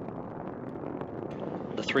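Steady roar of a Space Shuttle in ascent, its solid rocket boosters and three liquid-fuel main engines burning, heard as a dense low rumble. A man's voice starts speaking right at the end.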